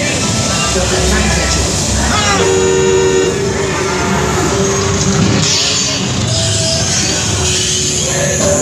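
Dark-ride show soundtrack over loudspeakers: music and voices, with a horn honking about two and a half seconds in.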